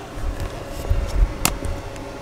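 Uneven low rumbling from a handheld camera being moved and handled as it is brought up close, with one sharp click about one and a half seconds in.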